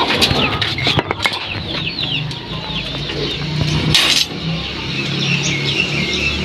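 Small birds chirping in quick repeated falling chirps, with sharp metallic clicks and rattles in the first second or so as the wire-mesh hutch door is handled, and a short rustle about four seconds in.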